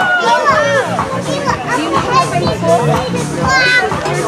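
Young children's high voices and chatter, over background music with a steady bass line.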